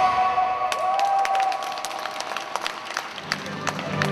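A live rock band's last note rings out and dies away, followed by scattered hand clapping in a large hall. Near the end, a different piece of music starts up low.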